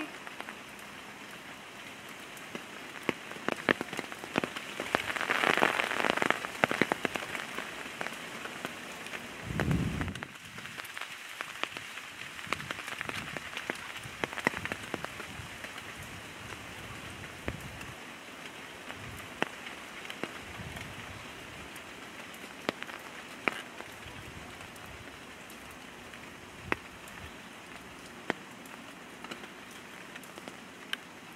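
Steady rain with scattered sharp drip ticks. A louder rustling swell comes about five to seven seconds in, and a short, dull low thump just before ten seconds.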